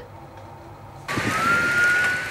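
A siren comes in suddenly about a second in, its pitch rising and then holding steady, over a loud hiss of background noise.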